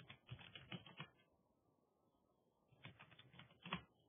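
Faint computer keyboard keystrokes in two quick bursts of about a second each, one at the start and one near the end, as a root password is typed at a server login prompt.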